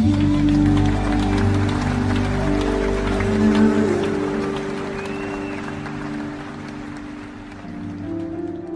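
Closing chord of a worship song held and dying away, with audience applause over it; both fade near the end.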